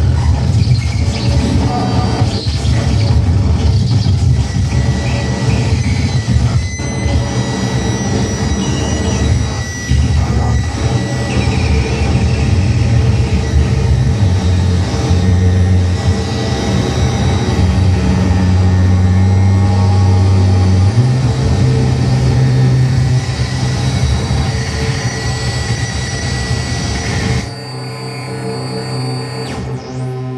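Harsh noise electronics played live: a loud, dense wall of distorted noise over a heavy low drone, with a few steady high tones threaded through. Near the end the noise cuts off suddenly, leaving a quieter, steady pitched synth-like tone.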